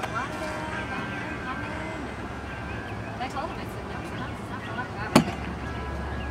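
A golf club striking a ball off a turf hitting mat: one sharp crack about five seconds in, over background chatter of voices.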